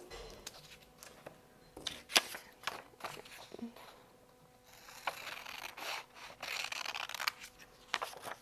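Scissors cutting through paper picture cards: a run of separate short snips, with a longer, denser stretch of cutting about five to seven seconds in.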